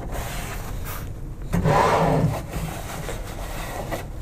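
Rubbing and scraping as hands work on the UP Box 3D printer's steel guide rods, greasing them with tissue and handling the print head carriage, with a louder rub about a second and a half in.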